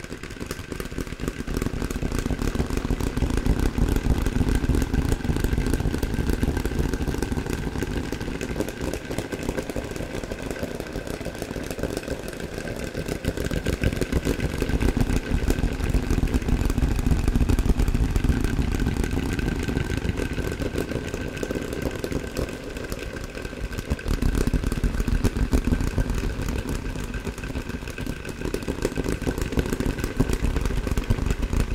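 Fast fingertip tapping on wooden objects, two layered tracks, drenched in added echo and reverb so the taps blur into a dense, rolling texture. It swells and eases in waves.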